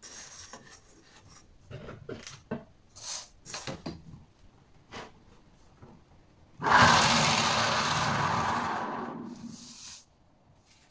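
A few light handling clicks and knocks, then about six and a half seconds in a sudden loud whirring starts and dies away over about three seconds as it slows: a homemade generator built from a fridge compressor motor housing, spun by a pulled cord and winding down.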